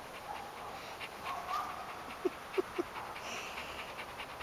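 A black-and-tan dog panting close to the microphone, with a faint whine in the first couple of seconds and three brief sounds in quick succession a little past halfway.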